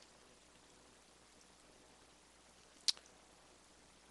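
Faint room hiss with a single short, sharp click about three seconds in.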